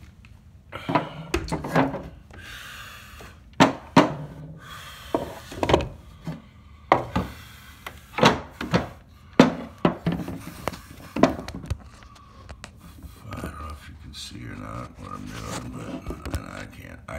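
Irregular sharp knocks and clacks of a wooden piece and a tape measure being handled against a plywood floor, about a dozen, the loudest near the middle.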